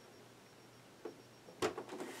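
A few light plastic clicks and knocks as the large toy sail barge is handled on the table: one faint click about a second in, then a sharper cluster of clicks about a second and a half in.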